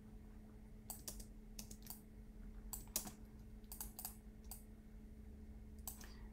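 Computer keyboard keystrokes, short sharp clicks coming in small irregular clusters of a few at a time, over a faint steady hum.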